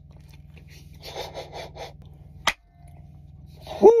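A man chewing a bite of breakfast sandwich, with a quick run of short crunchy chews about a second in, over a steady low hum in the cab. A single sharp click comes about halfway through, and a loud voiced 'woo' near the end.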